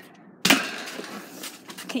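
A single sharp knock about half a second in, trailing off over about a second, followed by a few light clicks near the end.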